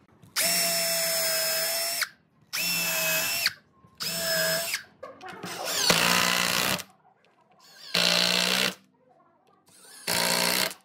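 Cordless drill/driver running in five short bursts. The first three are steady runs drilling pilot holes in a wooden rail. The last two are uneven runs driving wood screws into those holes.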